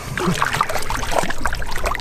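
Water splashing irregularly around hands and a large speckled trout as the fish is released over the side of a boat.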